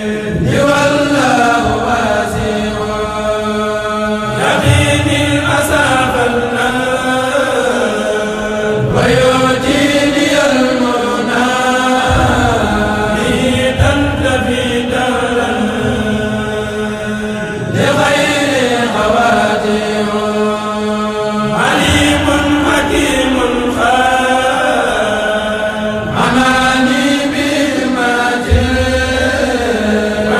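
A Mouride kourel choir of men chanting Arabic qasida poems with no instruments, many voices together in melodic phrases a few seconds long.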